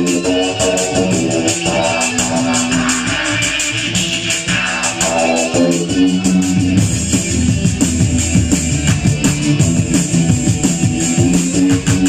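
Live drum-and-bass rock band playing loud: electric guitar over a fast drum-kit beat with steady, quick cymbal strokes. The part changes about six seconds in, with a busier, choppier low end.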